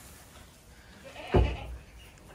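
A goat gives one short, loud bleat a little over a second in, against quiet barn background.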